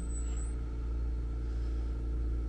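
A steady low mechanical hum, unchanging in level, with no other sound over it.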